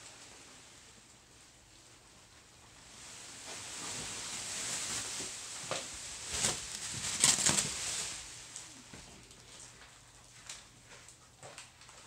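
Handling noise: a rustling hiss that swells through the middle, with a few sharp clicks at its loudest, then scattered small ticks.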